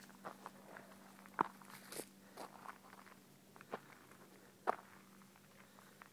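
Footsteps on dry fallen leaves: faint, irregular crackles, with a few sharper crunches scattered through.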